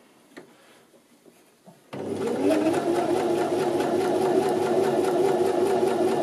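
Janome 725s Sewist sewing machine stitching the folded edge of a narrow rolled hem. It is quiet apart from a few faint clicks for about two seconds, then the machine starts abruptly and runs at a steady speed.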